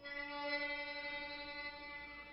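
Waterphone, a metal bowl resonator with upright metal rods and water inside, ringing with several steady metallic tones at once that sound together as one eerie held chord. The tones start at the very beginning and fade only slightly.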